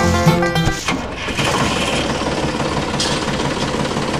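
Plucked-string background music stops about a second in and gives way to a steady, noisy engine-like running sound, matching the toy tractor in the scene.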